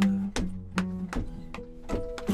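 Acoustic guitar strummed in a steady rhythm, a chord stroke roughly every 0.4 seconds, with the chords ringing between strokes.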